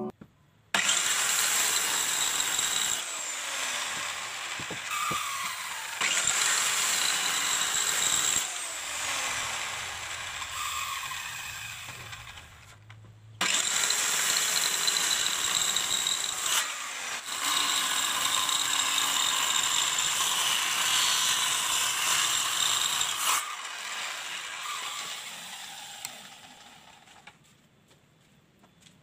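Handheld circular saw ripping a sawo Jawa board lengthwise: a steady high motor whine mixed with the rushing hiss of the blade in the wood. The sound starts suddenly, cuts out for a moment about 13 seconds in, runs on, then tapers off over the last few seconds.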